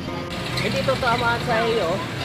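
A person talking over background music, with street traffic noise underneath.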